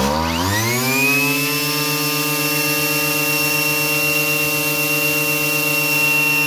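Hitachi CG33 brushcutter's 33 cc two-stroke engine revved from idle to full throttle. It climbs in pitch for about a second and a half, then holds a steady high-revving whine with its cutting head spinning free.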